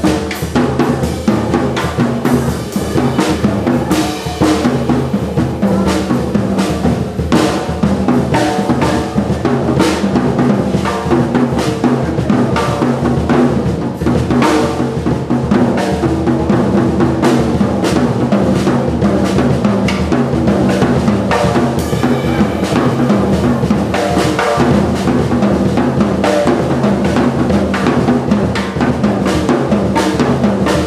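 Jazz drum kit played busily with sticks, dense snare and bass drum strokes with cymbals, over a Hammond B3 organ holding sustained pitched notes underneath.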